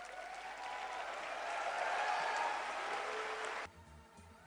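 Audience applause that builds up over about three seconds and then cuts off abruptly near the end, where background music with a beat comes in.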